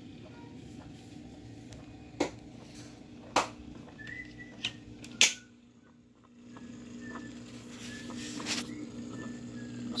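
A steady low hum with four sharp clicks, about a second apart, between two and five seconds in. The sound then dips almost to silence for a moment, and a soft hiss slowly swells.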